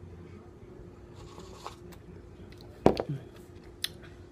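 Someone quietly sipping a very thick protein shake from a plastic blender cup, with a faint slurp about a second in. About three seconds in comes a sharp knock as the cup is set down, followed by a short 'mm' and a small click near the end.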